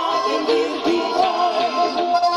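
Live Oberkrainer-style folk band playing, with accordion, clarinet, trumpet and electric guitar, and female voices singing over them.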